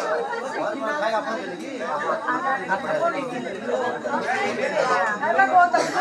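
Overlapping chatter of a crowded group of people talking at once, many voices mixing together.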